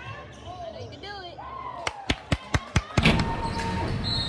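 A basketball dribbled on a hardwood gym floor: five quick bounces about a fifth of a second apart, about two seconds in. A sudden loud rush of noise takes over in the last second.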